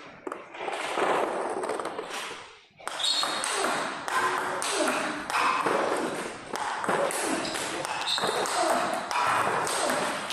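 Table tennis multiball drill: celluloid-type balls struck by rackets and bouncing on the table in quick, even succession, about two hits a second, over a murmur of voices. The sound drops out briefly just before a third of the way in.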